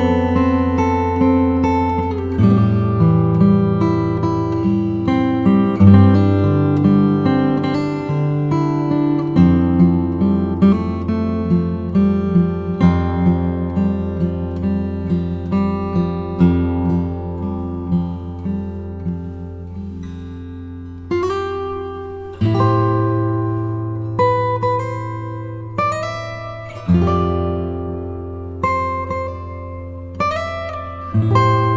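Background music on acoustic guitar: a slow run of plucked notes over long, low bass notes, with stronger strummed chords from about twenty seconds in.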